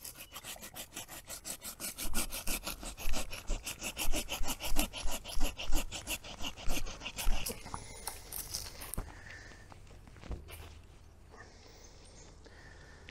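Hand pruning saw cutting through a hazel stem in quick, even back-and-forth strokes. The sawing stops about two-thirds of the way through, followed by a few faint knocks.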